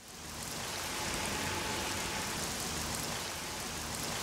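Steady rain falling, fading in over the first second.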